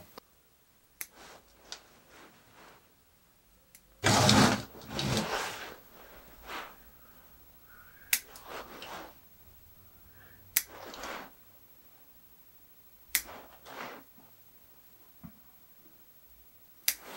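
Bonsai scissors snipping twigs off a spruce, a sharp snip every few seconds, five in all, with rustling of needles and branches as the tree is handled between cuts. The loudest moment is a longer rustle about four seconds in.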